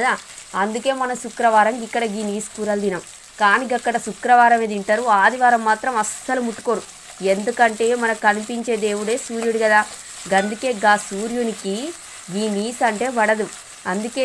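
Sliced onions and green chillies sizzling as they fry in oil in a metal pot, stirred with a spatula. A voice talks over it almost throughout and is the loudest sound.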